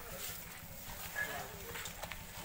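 Faint talking in the background outdoors, with a brief high chirp a little after a second in.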